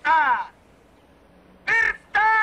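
A high, loud vocal cry that slides down in pitch, then after a pause of about a second a short second cry near the end.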